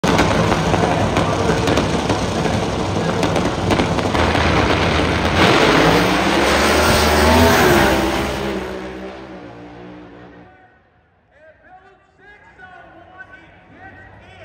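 Drag race car launching and running down the strip at full throttle. The engine is very loud for about eight seconds, rising in pitch near the end of the run, then fades away into the distance.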